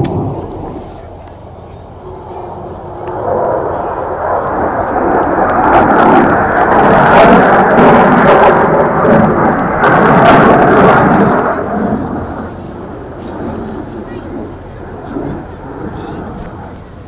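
F-16 fighter jet's engine noise swelling as the jet comes round in its display, loudest through the middle and fading over the last few seconds.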